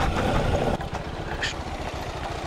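Kawasaki Versys X300's parallel-twin engine running at low speed as the motorcycle rides over a rocky dirt trail, with a short high sound about one and a half seconds in.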